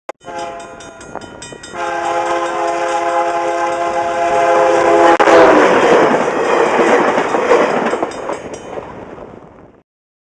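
VIA Rail Canada F40PH diesel locomotive sounding its multi-chime horn, loud from about two seconds in, dropping in pitch as it passes close by. The horn gives way to the rumble and clatter of the passing train, which fades and cuts off just before the end.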